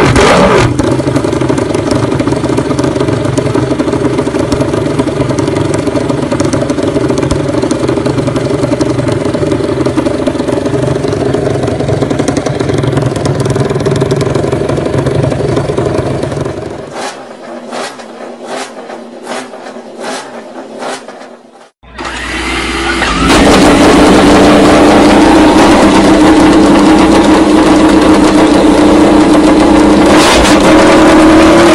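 Ducati MotoGP racing motorcycle's V4 engine running loudly and steadily on its stand, then shutting off about seventeen seconds in, leaving a few sharp clicks. After a brief break, another MotoGP bike's engine is running loudly and steadily.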